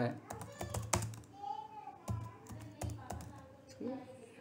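Typing on a computer keyboard: about a dozen uneven key clicks as a short phrase is typed.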